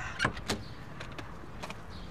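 A few sharp clicks and knocks from a car's door and lock being handled, the two loudest in the first half second and fainter ones after, over a low steady background.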